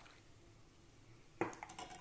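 A metal ladle clinking and scraping against the pan of boiling milk: a faint click at the start, then a short clatter of metal strikes in the last half second.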